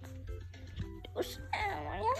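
A high-pitched voice-like sound sliding up and down in pitch comes in about a second and a half in, after a quieter stretch of faint background music over a steady low hum.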